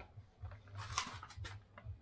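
Polishing paste squeezed from a plastic bottle onto a foam polishing pad, with handling noise: a short noisy squirt and a few small clicks about a second in.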